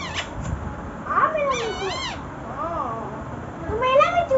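Rose-ringed parakeet calling: several short calls that rise and fall in pitch, from about a second in, with another call starting near the end.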